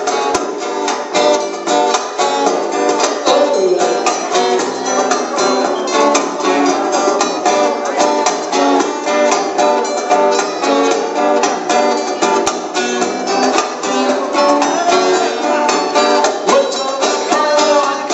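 A small band playing live on several strummed acoustic guitars, with a steady, even strumming rhythm that runs without a break.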